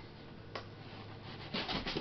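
A hand rubbing and sliding over a cardboard shipping box, with a single light tap about half a second in.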